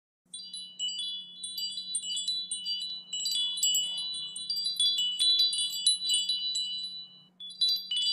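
Wind chimes tinkling: many high, overlapping ringing notes struck in quick succession over a faint low hum, pausing briefly near the end.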